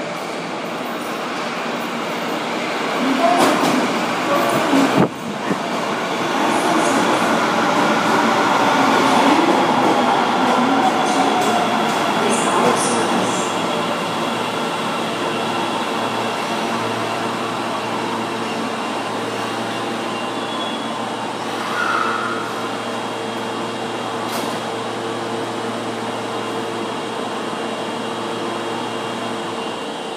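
Osaka Municipal Subway 25 series electric train pulling into an underground platform and braking to a stop, with the wheels and running gear loud as the cars pass. Its VVVF inverter whine falls in pitch as it slows, with a sharp click about five seconds in and faint high squeals. A steady low hum runs through the second half as the train comes to a stand.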